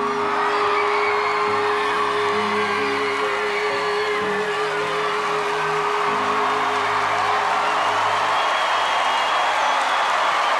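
A singer holding one long note, wavering with vibrato, over orchestral backing until it ends about eight seconds in, while a large audience cheers and whoops throughout.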